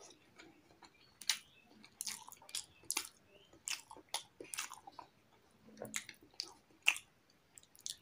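Close-miked mouth sounds of a man eating with his hands: chewing, and wet smacks and clicks as he licks curry off his fingers, coming irregularly, in clusters with short pauses between.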